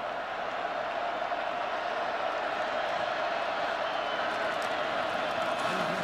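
Steady crowd noise from a large stadium crowd, held at an even level. This is the home crowd making noise while the visiting offense is at the line, so the players can't hear the quarterback's calls.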